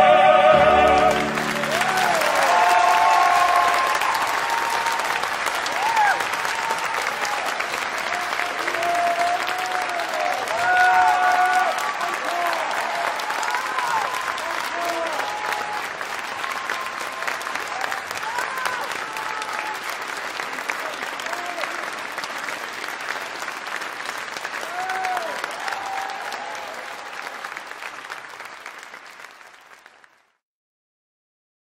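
A small ensemble of opera singers ends on a held chord, then the audience applauds, with voices calling out over the clapping. The applause slowly fades away near the end.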